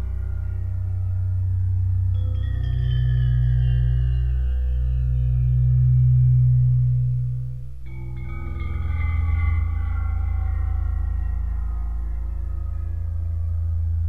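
Ambient meditation music made for theta/delta brainwave entrainment: steady low drone tones under bell-like tones that ring out. New tones strike about two seconds in and again near eight seconds, their upper overtones slowly sinking in pitch as they fade.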